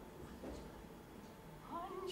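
Quiet gap in a live opera performance with only faint low sound. Near the end a singer's voice enters with a short gliding rise and fall in pitch.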